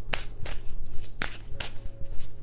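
A deck of tarot cards being shuffled by hand: a run of quick, sharp card snaps and flicks, about three a second and unevenly spaced.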